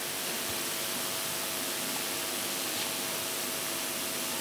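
Steady hiss of room noise with a faint steady tone, no one speaking.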